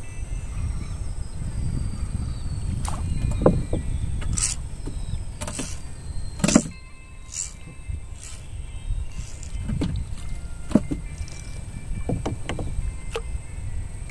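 Scattered sharp knocks and taps against a wooden boat as a small fish is hauled in on a bamboo pole, over a steady low rumble.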